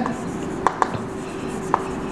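Chalk writing on a chalkboard: a few sharp taps of the chalk stick against the board as words are written, over a faint steady hum.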